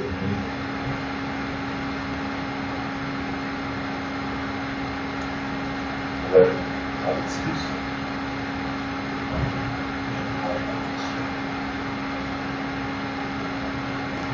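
Steady background hum and hiss, broken by a few short faint sounds about six, seven and nine seconds in.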